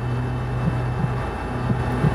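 A steady low drone with an even rushing hiss beneath it.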